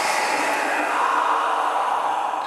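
Steady rushing hiss with no distinct events, a sound-design noise bed under a horror trailer's end card.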